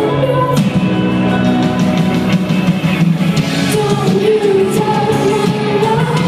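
A live band with a singer, heard from the audience in a large hall: the voice holds long, wavering notes over electric guitar, keyboards and drums.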